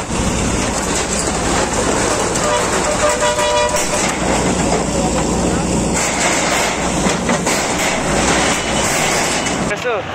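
JCB backhoe loader's diesel engine running as it tears down corrugated metal sheet sheds, with sheets of metal clattering and crashing, and voices in the background.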